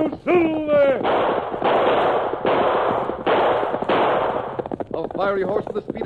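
A long cry falling in pitch, then a volley of about five gunshots, each ringing on as a burst of noise until the next, in a narrow-band old radio recording. A man's voice begins speaking near the end.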